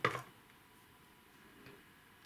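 A steel flash hider set down on the plastic platter of a digital kitchen scale with a single light knock, followed by faint room tone with a couple of small ticks.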